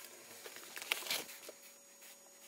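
Faint rustling and a few clicks from a hand-held camera being moved about, over a low room hiss; the clicks are loudest about a second in.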